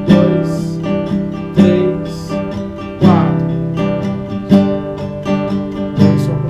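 Classical nylon-string guitar strummed in a steady rhythm, changing chords. A strong accented strum comes about every one and a half seconds, with lighter strokes between.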